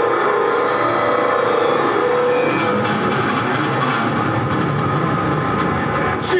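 Harsh electronic noise played on a synthesizer keyboard: a dense, steady rumbling wash with a few held tones, its high layer dropping out about two and a half seconds in.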